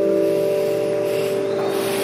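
A strummed acoustic guitar chord left ringing, its notes held steady. A hiss swells over the second half and cuts off sharply just after.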